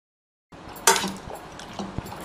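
Hand masher with a perforated metal disc knocking against the bottom of a stainless-steel pressure cooker while mashing soft-cooked tomatoes. One sharp clink about a second in, then a few softer knocks.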